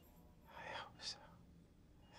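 A brief, hushed whispered utterance about half a second in, ending in a sharp hiss like an 's' sound, over quiet room tone.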